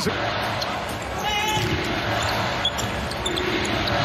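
Live basketball game sound on a hardwood court: a ball bouncing over steady arena noise, with a brief high squeak about a second in.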